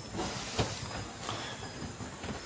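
Steady background hiss with a few faint clicks or knocks.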